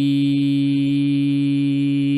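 A man's reciting voice holding one long, steady note: the drawn-out closing syllable of a verse in Quran recitation.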